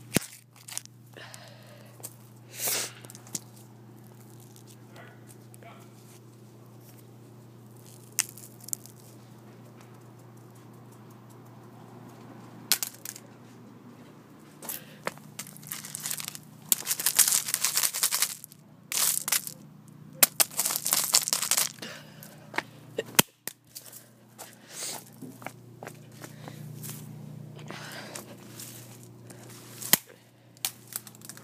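Sharp, scattered cracks and knocks of a phone being stamped on and struck against stone, then a long stretch of gravel crunching and rattling about halfway through as the pieces are handled in the stones.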